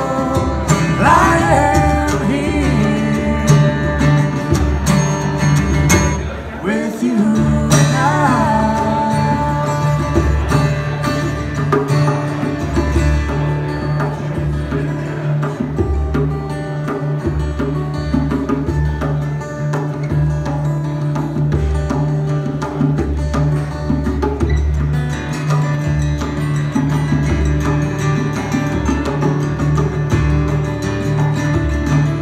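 Live acoustic band: two acoustic guitars strumming and picking over a steady hand-drum beat. A woman's sung phrase ends in the first couple of seconds, and the rest runs as an instrumental break.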